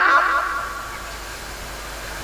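A man's voice through a public-address system stops, and its echo fades away over about half a second. A steady background hiss follows, with no words.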